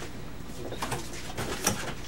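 A few light knocks and rustles over room tone: footsteps and paper handling as the presenters change over at the podium.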